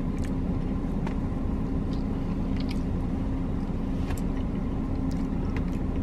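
Steady low rumble and hum inside a parked car with its engine running, with a few faint clicks and taps of a plastic fork against a foam cake container.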